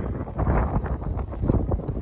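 Wind blowing on the microphone, an uneven low rumble that rises and falls.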